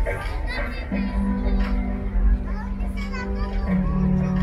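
Music playing with long, held low notes that change twice, together with children's high voices calling out in the audience.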